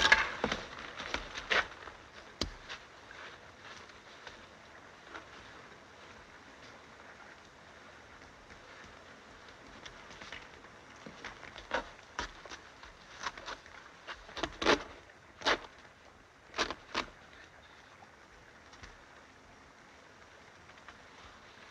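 A quiet film soundtrack: a faint steady hiss with a scattered handful of short, soft clicks and rustles, most of them bunched together past the middle.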